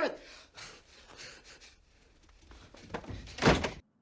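The dying end of a man's horrified scream, then low quiet sound and a single short, loud thump about three and a half seconds in.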